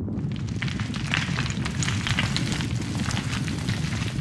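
Sound effect under an animated logo: dense small crackles and snaps over a steady low rumble.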